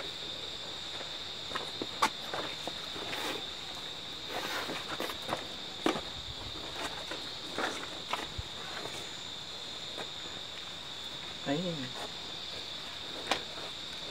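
A steady high-pitched insect chorus, with scattered light clicks and scuffs of footsteps and handling, and a brief low voice-like sound about two-thirds of the way through.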